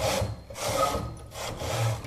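Hand-operated knitting machine carriage slid back and forth across the metal needle bed, knitting plain rows: a rasping slide with each pass, three passes, the last stopping near the end.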